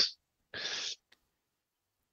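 A man's voice trailing off at the end of a word, then a short breath about half a second in, lasting under half a second; the rest is near silence.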